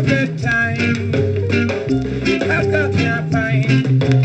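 Vintage Jamaican Federal-label vinyl record playing on a direct-drive turntable: upbeat ska-style band music with a steady bass line.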